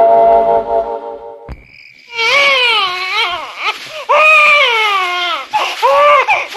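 Background music of sustained notes fades out over the first second and a half. After a click, an infant cries in a run of loud wailing cries, each rising then falling in pitch.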